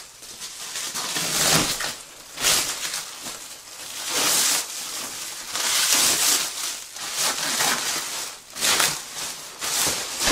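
Plastic wrapping crinkling and rustling in irregular bursts as it is pulled and bunched off a rolled foam mattress.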